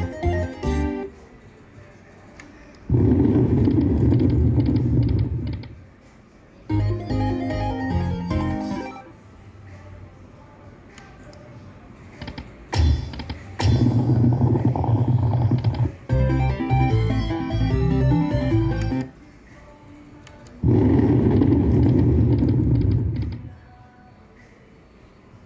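Aristocrat Buffalo Stampede video slot machine playing its game music and sound effects in repeated loud stretches of two to three seconds as the reels are spun again and again, with quieter tones between spins.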